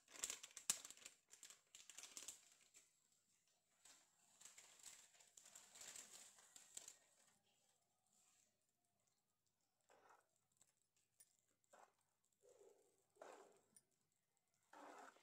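Faint scraping and rustling as red chilli powder is mixed in a metal bowl. Later come a few short, soft, separate sounds as oil is worked into the powder.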